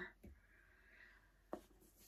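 Near silence: room tone with a faint rustle, then one soft click about one and a half seconds in, as a small handbag is handled.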